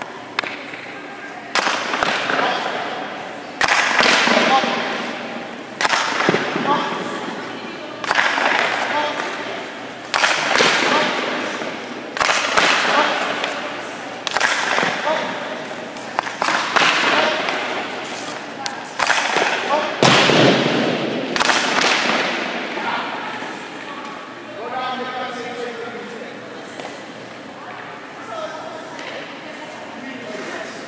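Hockey pucks shot in quick succession, about ten sharp cracks of stick and puck against goalie pads, net and boards roughly two seconds apart, each ringing out in the rink's echo. The shots stop a little past two-thirds of the way through, leaving quieter scraping and knocking.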